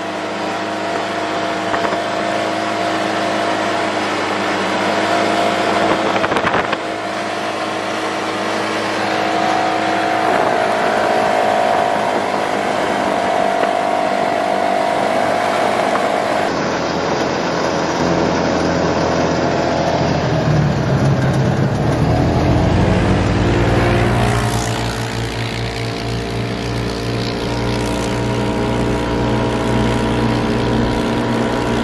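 Side-by-side UTV engine running at speed, its pitch shifting with the throttle, with a heavier low rumble in the second half.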